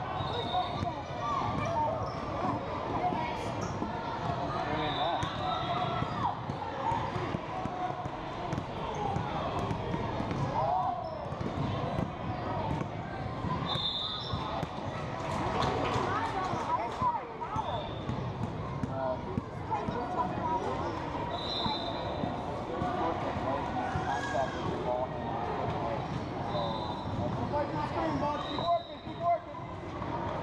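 Basketball game sounds in a reverberant gym: a ball bouncing on the hardwood floor amid the steady overlapping chatter and calls of players and spectators, with several brief high squeaks scattered through it.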